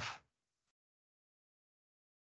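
The tail of a spoken sentence cutting off a moment in, then dead silence.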